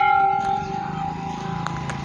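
Brass temple bell ringing after a single strike. Several clear tones slowly fade away over about two seconds.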